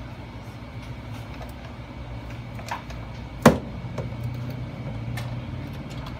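Hands handling a plastic gaming headset: a few faint clicks and one sharp knock about three and a half seconds in, over a steady low hum.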